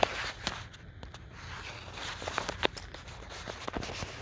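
Rustling and scattered clicks of a phone being handled, its microphone rubbing against clothing.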